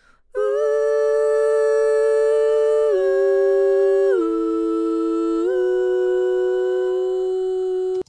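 Playback of a home-recorded two-part vocal harmony by one woman: long held notes sung together a short interval apart, stepping down twice and then back up. She finds it not quite pitch perfect.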